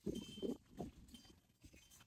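A quiet pause in talk with faint outdoor background. A few soft low bumps come in the first second, and a brief faint high tone sounds near the start.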